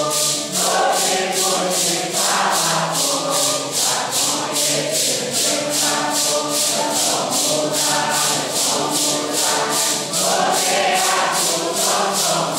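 A Santo Daime congregation singing a hymn together, men's and women's voices in unison, with maracás shaken in a steady beat of about three strokes a second.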